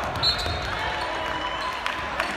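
Indoor men's volleyball rally in a large hall: a few sharp smacks of the ball being hit and striking the floor, and short squeaks of sneakers on the hardwood court, over voices and crowd noise.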